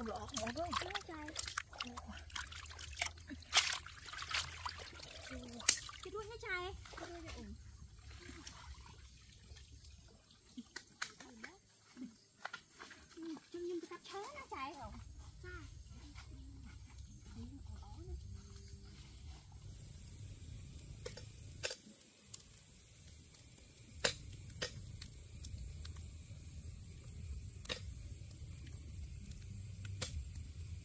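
Water sloshing and trickling as live catfish are handled in a wet wicker basket, with a person's voice over it in the first half. Later come a few sharp knocks.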